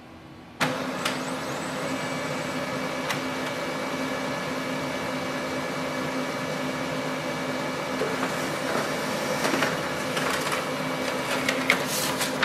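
Brother HL-L2350DW compact laser printer starting up suddenly and running a print job: a steady motor hum with a high whine, a click about a second in and again about three seconds in. A run of clicks near the end as the printed page feeds out.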